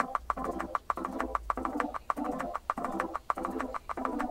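Home-made electronic backing track from Logic Pro X: a keyboard patch playing short chords over and over, about two a second, over a fast, steady beat of sharp clicks or snaps.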